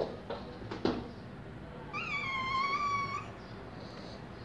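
A cat meows once, a single drawn-out call of over a second starting about two seconds in. A few sharp knocks come in the first second, the first the loudest.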